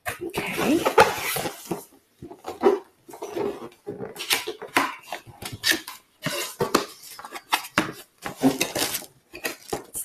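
Cardboard packaging being handled and opened: a box lid pulled off and cardboard flaps scraping, sliding and knocking in irregular bursts, with a busier stretch in the first couple of seconds.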